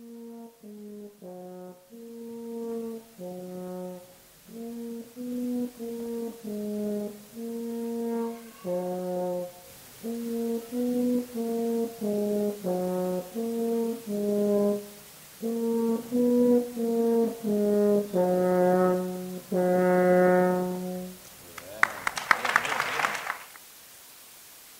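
French horn played solo: a slow melody of separate tongued notes that ends on two long held notes. A short burst of applause follows near the end.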